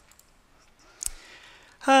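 A single sharp click about a second in, against quiet room tone, as the presentation slide is advanced. A man's voice starts just before the end.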